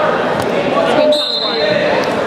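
Referee's whistle, one short blast of about half a second, about a second in, starting the wrestling from referee's position, over steady crowd chatter in a gym.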